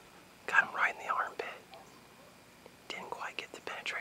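A man whispering to the camera in two short stretches, the second running on past the end.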